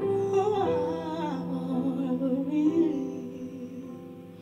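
A woman singing a wordless, wavering melodic line over held chords on a Roland RD-600 digital stage piano, dying away toward the end.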